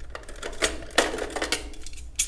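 Handling noise of small hard objects being picked up and moved: a series of sharp clicks and clatters, roughly every half second.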